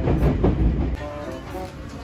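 Low rumble of a train in motion, heard from inside the carriage, under background music with a steady beat. The rumble drops away about a second in, leaving only the music.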